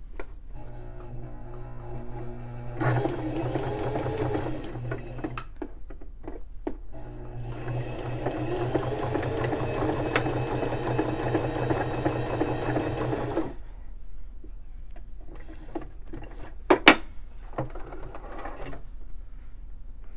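Domestic electric sewing machine stitching a bar tack, a short, narrow zigzag, in two runs of several seconds with a brief pause between, then stopping. A few sharp clicks follow near the end.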